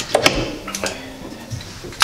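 A few sharp clicks and knocks, most of them in the first second, as metal pliers and drain parts are picked up and handled over a stone vanity counter.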